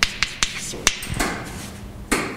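Chalk writing on a blackboard: several sharp taps of the chalk against the board in the first second, then a scratchier stretch.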